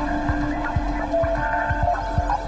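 Electronic music: a steady low drone with short, shifting higher synth notes over an uneven beat of about four low thumps a second and fast high ticks.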